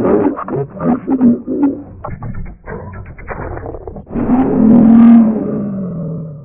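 Effect-processed, distorted cartoon logo audio: short warbling, voice-like calls, then one long held tone from about four seconds in that slowly drops in pitch.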